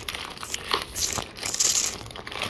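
Plastic film wrapper of an Oreo cookie packet crinkling as hands pull it open, in irregular crackles that grow louder in the second half.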